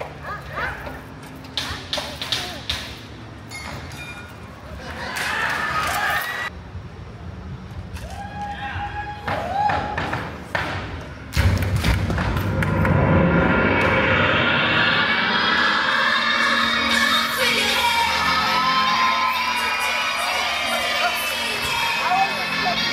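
Percussive thumps and knocks from stage performers striking a table by hand, with brief voices between the beats. About eleven seconds in, loud music with singing starts suddenly over the show's sound system and plays on.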